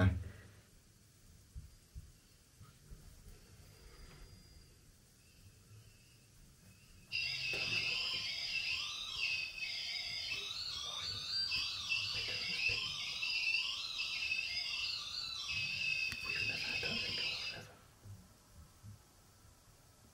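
A REM pod's electronic alarm set off, sounding high, warbling tones that shift quickly in pitch; it starts suddenly about seven seconds in, dips briefly, and cuts off a few seconds before the end. Before it there is only faint room tone.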